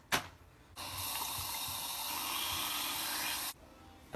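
Water running from a bathroom sink tap for about three seconds, starting and stopping abruptly.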